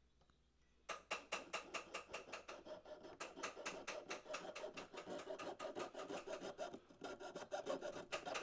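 Jeweller's piercing saw cutting through a hollow pure gold tube with quick, even back-and-forth strokes, about four or five a second. The strokes start about a second in.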